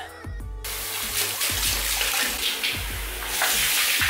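Shower water spraying and splashing, starting abruptly about half a second in, over background music with a steady bass beat.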